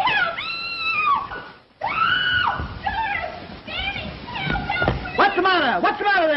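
A woman screaming: two long, high, held screams, then shorter cries, and near the end a run of screams that slide down in pitch.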